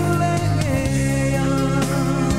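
A Mizo song: a sung melody holding and sliding between notes over steady instrumental accompaniment.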